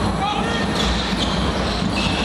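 Basketball being played on a hardwood court in a large hall: the ball bouncing and brief high squeaks of shoes, over the steady noise of crowd voices.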